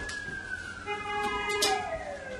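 Whiteboard marker squeaking against the board as it writes: a long squeal that slides down in pitch, with shorter higher squeaks and a few light taps of the pen tip along the way.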